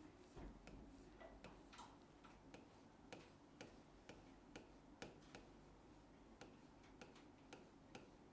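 Marker tapping and sliding on a writing board while letters are written: a faint string of irregular clicks, two or three a second, with a few short scratchy strokes.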